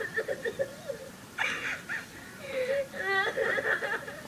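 A voiced cartoon character crying: whimpering, with a louder sob about a second and a half in and a high, rising wail about three seconds in.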